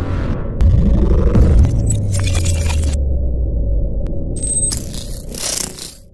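Cinematic sound-effect intro laid over the edit: a low rumble with a swooping rise and fall in pitch about a second in, then crackly noise bursts. A hissing whoosh swells near the end and fades away.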